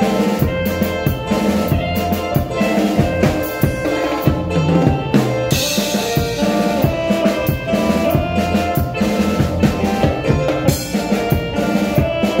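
Drum kit played live with a band: snare and bass drum hits with cymbals over held notes from the other instruments, and a cymbal crash about five and a half seconds in.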